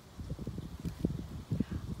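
A small cloth sachet being opened by hand to get at a tumbled stone: a run of soft, irregular rustles and light bumps.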